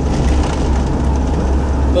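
Steady road and engine noise inside a moving vehicle's cabin: a strong low rumble with an even hiss over it.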